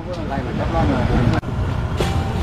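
Several people talking indistinctly over a steady low rumble, broken by a sudden brief dropout about one and a half seconds in.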